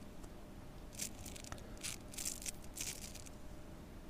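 A few short, crisp rustles from something being handled at the painting table, starting about a second in and bunching together in the middle.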